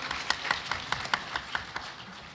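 Light hand clapping, a run of claps about four to five a second, as brief applause.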